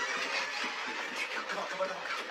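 Hushed voices saying "back to back" and "come" over a steady hiss.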